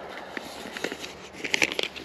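Light handling noises: a few soft crinkles and clicks, with a small cluster of them near the end.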